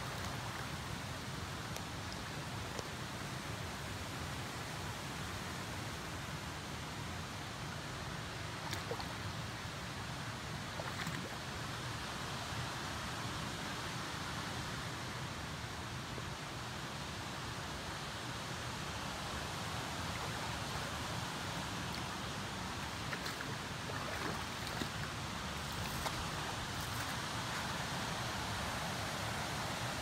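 Creek water running steadily among boulders, an even rushing sound with a few faint ticks.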